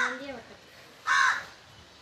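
A crow caws once, a single short call about a second in.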